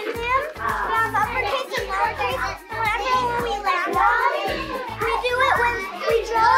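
Children's voices chattering over background music with a steady beat.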